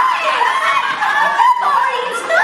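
Several high young voices laughing and snickering together, overlapping throughout.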